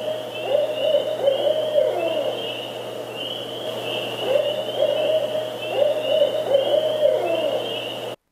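Barred owl calling its 'who cooks for you' call: two phrases of rhythmic hoots, each ending in a drawn-out hoot that slurs downward, the first about two seconds in and the second near the end.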